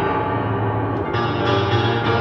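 Acoustic upright piano played with held, ringing chords over a sustained bass; new notes are struck about a second in.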